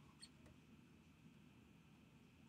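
Near silence: faint room tone with a thin steady whine and a single faint click about a quarter second in.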